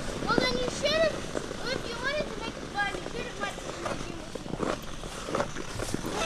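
High-pitched voices of children calling out and chattering some way off, in short rising-and-falling cries, over the scraping strides of ice skates on ice.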